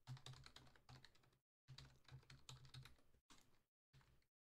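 Faint computer keyboard typing: a quick run of key clicks, broken by brief dead-silent gaps about one and a half and three and a half seconds in.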